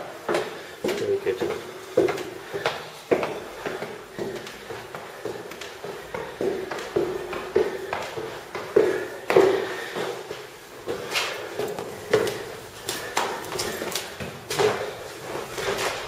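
Footsteps climbing a long stone staircase, with a steady run of knocks about one or two a second.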